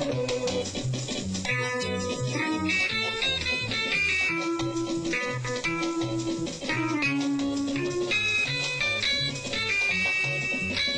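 Mellotron tape-replay keyboard playing a tune: a plucked, guitar-like lead voice over a steady rhythm and bass backing from its left-hand rhythm tapes.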